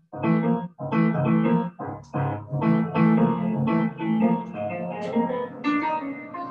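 Grand piano playing jazz chords and melody in phrases, heard with the engineer's artificial reverb set to a cathedral-sized space. There are a couple of brief dropouts in the sound in the first second.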